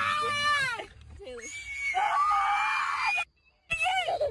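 People screaming in high-pitched voices: one scream ends under a second in, and a second long, held scream runs from about two seconds to just past three, where it cuts off suddenly.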